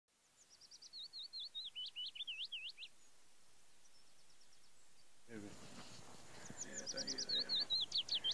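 A songbird singing a quick run of sweeping, slurred whistled notes that drop in pitch as they go. The song runs for the first three seconds and starts again near the end.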